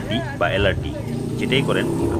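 A person talking over a steady low hum.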